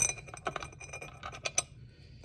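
A small steel screw clicking and scraping against a glass fog-light lens as it is tried in the lens's screw hole: a quick run of light clinks and ticks, with a sharper click about one and a half seconds in. The hole is slightly too small, so the screw hits the glass.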